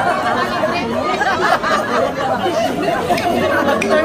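A group of women chattering all at once, many voices overlapping, with some laughter among them.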